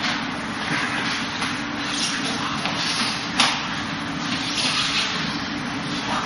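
Steady hiss of room noise with scuffs and slaps from two sparring partners' arms and feet as they trade Wing Chun hand techniques at close range, and one sharp slap about three and a half seconds in.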